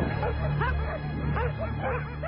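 Dogs barking rapidly and repeatedly, several barks a second, over background music.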